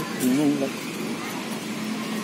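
A short burst of a voice, loudest about a quarter of a second in, over steady outdoor background noise with a low hum.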